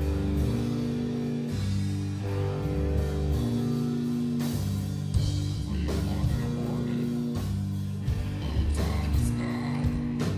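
Live rock band playing a slow, heavy passage: amplified electric guitars hold low chords that change every couple of seconds. Drum and cymbal hits come in about halfway through and again near the end.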